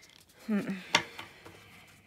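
A single sharp click about a second in, from oracle cards being handled on a wooden tabletop, just after a short hummed "hmm".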